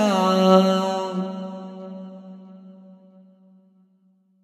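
A held vocal drone ending an unaccompanied devotional song (naat): one steady low pitch, sung or hummed, fading out slowly, its bright upper part dropping away about a second in.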